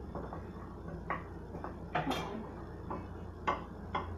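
Wooden spatula stirring sliced mushrooms and onions in a skillet, knocking against the pan about five times at uneven intervals over a low steady hum.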